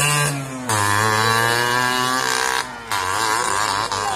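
Motorcycle engine running at steady high revs for about two seconds. It drops off briefly near three seconds, then picks up again with a wavering pitch.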